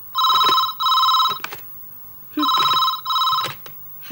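Corded desk telephone ringing: two rings, each a pair of short trilled tones with a brief gap between (a double-ring cadence), the second ring coming about two seconds after the first.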